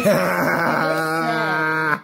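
A man's voice holding one long, drawn-out note, wavering at first and then steady, cut off at the end.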